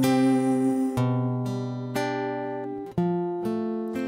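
Acoustic guitar playing a slow chord passage, a new chord struck about once a second and left to ring and fade.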